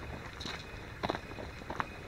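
Footsteps of a person walking on a rocky track scattered with loose grit, about three steps in an even walking rhythm.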